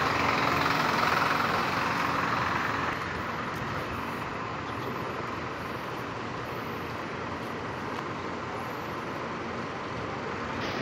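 Street noise: a steady hiss of traffic, louder for the first three seconds and then even.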